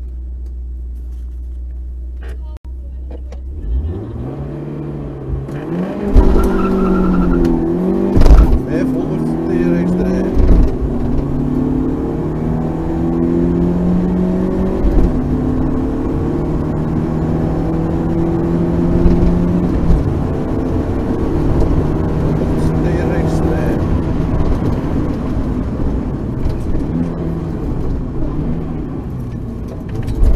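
Rally car engine heard from inside the cabin: idling at the start line, then launching hard about four seconds in and revving up through several quick upshifts. It then runs steadily at speed on the stage and eases off about twenty seconds in as the car slows.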